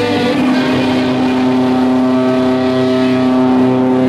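Loud amplified electric guitars holding sustained, distorted notes that ring on with no drums under them, shifting to a new pitch just after the start.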